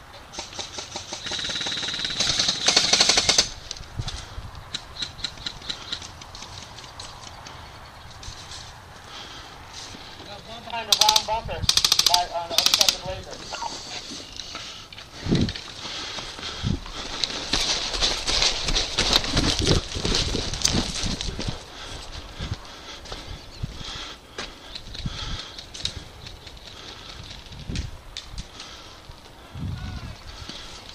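Airsoft gunfire: rapid runs of clicking shots from airsoft guns, heaviest in the first few seconds. A short voice comes through around the middle, and later there is rustling movement through dry reeds.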